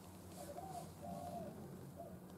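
Faint outdoor ambience with two short, faint bird calls, about half a second and about a second in.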